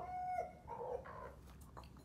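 Chickens in a backyard flock calling: one pitched call that breaks off about half a second in, then a second, fainter call.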